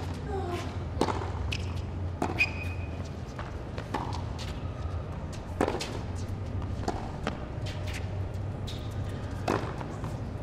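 Tennis ball struck back and forth with rackets in a baseline rally on a hard court: a sharp pock about every second or so, over a low steady hum.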